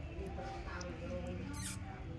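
Young mongooses squeaking and chittering while feeding on a raw fish, with a brief sharp noise near the end.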